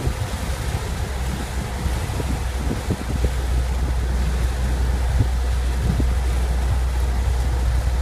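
Road noise inside a moving car's cabin: a steady low rumble of tyres and engine, a little stronger from about three seconds in, with a few faint knocks.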